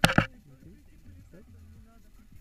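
A sharp double knock of handling noise on the selfie-stick camera, two quick hits right at the start, then only a faint low rumble of breeze and rustle.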